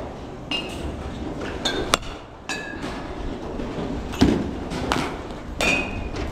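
Metal baseball bats pinging on pitched balls, several sharp pings each with a brief high ring at a different pitch. A dull thump comes about four seconds in, and another about a second later.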